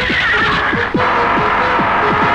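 A horse whinnying over action background music with a fast, driving drumbeat. The whinny fades out and the music changes abruptly about a second in.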